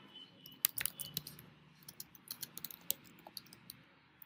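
Computer keyboard being typed on: faint, irregular key clicks, several a second.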